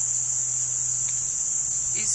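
Crickets trilling in one steady, high-pitched drone, with a faint low hum beneath.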